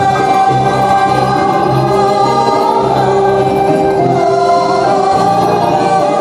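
A woman singing a slow, ornamented Arabic melody with long held notes, other voices joining, over frame drum accompaniment.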